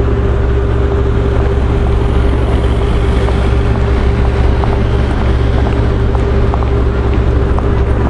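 Steady city street traffic noise: a continuous low rumble of vehicles with a constant hum, as traffic waits at a light.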